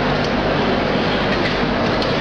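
Automatic cartoning and cellophane overwrapping machine running: a steady, dense mechanical clatter with a few faint clicks.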